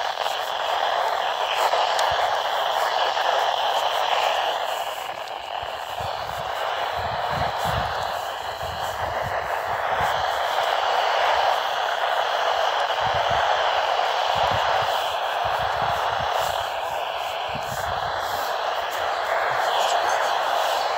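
Static hiss from a Midland weather-band radio's speaker tuned to a weak NOAA Weather Radio channel, steady throughout, with a faint wavering signal showing through the noise.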